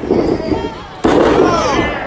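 A wrestling ring boom: bodies crash down onto the canvas-covered ring boards about a second in, one sudden loud crash with a short rumbling tail. Shouting voices follow.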